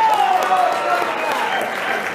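Audience in a sports hall applauding a boxer's ring introduction, with voices carrying over the clapping.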